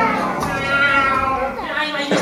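Human voices imitating cats, giving sliding, falling meow-like calls, as the tail of a brass music cue dies away at the start.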